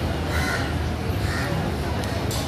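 A bird calling: two short calls about a second apart, over a steady low background din.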